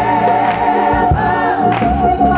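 Gospel choir singing in full harmony, a high voice held and bending over the other parts, with a short regular beat about every half second.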